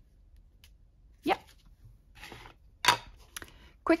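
Craft supplies being handled on a cutting mat: a soft rustle, then one sharp knock about three seconds in and a fainter tap after it, as a tin ink pad and an ink blending tool are set out.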